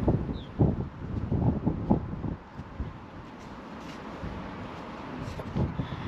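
Outdoor wind rumbling and buffeting on an action camera's microphone, with a few low thumps in the first two seconds, then steadier. A short high bird chirp sounds once near the start.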